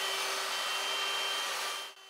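Hand-held electric drill with a paddle mixer running steadily, stirring putty in a plastic bucket. The motor gives an even noise with a steady whine and fades out near the end.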